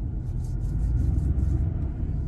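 A car moving at road speed: a steady low rumble of tyre and engine noise.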